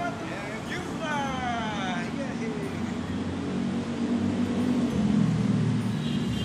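Road traffic on a busy city avenue: car and vehicle engines running past, with the engine rumble growing louder about four to five seconds in. Near the start a pitched sound falls steadily for about a second and a half.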